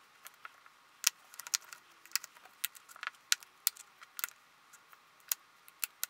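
Irregular small sharp clicks and taps, a few a second, as single eyeshadow pans are set down and snapped into a magnetic Z Palette.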